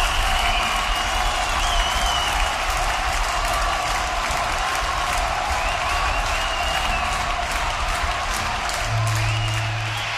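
Rock concert audience applauding and cheering between songs, with whistles rising above the clapping. A low steady instrument note sounds near the end.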